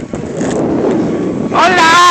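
Scratchy rustling noise on the microphone. About one and a half seconds in, a person's high-pitched, drawn-out vocal cry breaks in and becomes the loudest sound.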